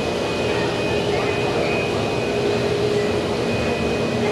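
Vertical wind tunnel for indoor skydiving running: a steady rush of air from its big fans, with a constant hum and a high tone on top.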